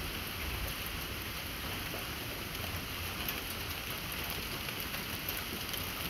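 Steady, even hiss-like background noise with a few faint ticks.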